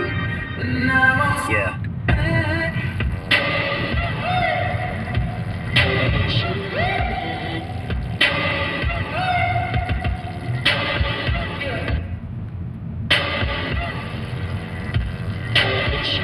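A pop song with a singing voice plays on, with a sharp accent about every two and a half seconds, over a steady low rumble of road and engine noise from the moving car.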